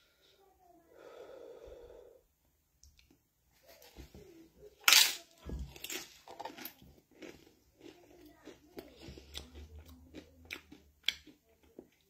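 A man chewing a mouthful of hot chicken curry, with irregular wet mouth clicks and lip smacks. There is a sharp breath about five seconds in and a short low hum near the start.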